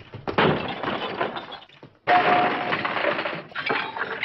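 Old-film sound-effect samples triggered on a sampler: a crash and clatter like breaking glass and metal, in two loud bursts, the second starting about two seconds in with a short ringing tone.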